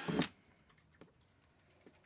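Cordless drill running as it bores a hole through the bottom of a plastic storage box, then stopping abruptly about a quarter of a second in. After that there are only a couple of faint clicks.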